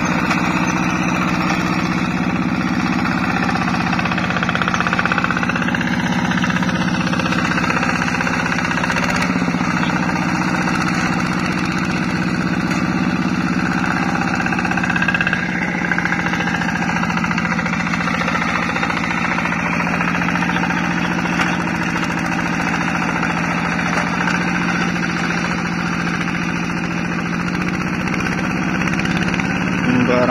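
Single-cylinder diesel engine of a two-wheel hand tractor plowing a flooded rice paddy, running steadily with a knocking chug. Its pitch shifts slightly a couple of times.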